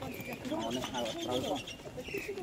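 People's voices talking, with a high, rapid chirping running through the middle of it.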